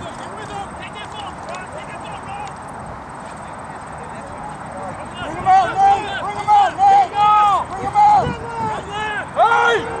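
Voices shouting short, loud calls across an open rugby field, beginning about halfway through after a stretch of faint distant voices.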